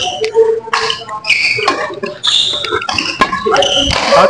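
Badminton rally on an indoor court: several sharp racket strikes on the shuttlecock, mixed with short high squeaks of court shoes on the floor.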